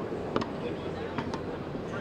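Background chatter and hum of a busy exhibition hall, with three light clicks as a die-cast ball-and-socket antenna mount arm is handled and lifted onto its mounting plate.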